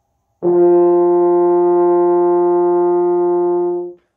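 French horn playing its first beginner note, written middle C (sounding the F below), open with no valves pressed. It is held as one steady note, starting about half a second in and lasting about three and a half seconds.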